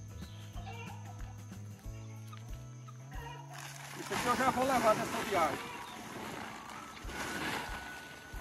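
Background music, then from about four seconds in, loud rustling and crackling of an old, dry sack being grabbed off the ground and pulled along.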